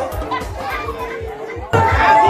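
African dance music with a steady bass beat, with children's and crowd voices over it. Near the end it cuts abruptly to louder music with long held notes.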